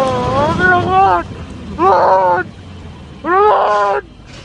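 A person's voice calling out in three drawn-out, wavering cries with no clear words: a long one, then two shorter ones.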